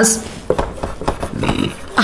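Felt-tip marker writing on a whiteboard: a tap as the tip meets the board about half a second in, then the tip scratching across the board as a word is written.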